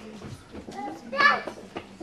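Faint background voices in a room, with one short spoken sound about a second in.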